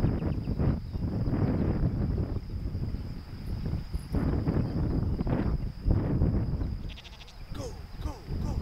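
Sheep bleating several times over a steady low rumble.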